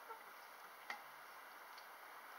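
Near silence with a single short, sharp click about a second in.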